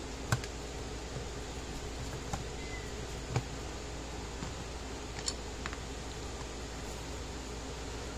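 Scattered faint clicks and taps of a screwdriver and a plastic tester case being handled as the case's back screws are taken out, over a steady background hiss and hum. The clearest tap comes about three and a half seconds in.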